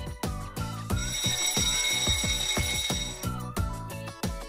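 Alarm-clock bell ringing for about two seconds, starting about a second in, as a time's-up sound effect marking the end of a countdown. Background music with a steady beat plays under it.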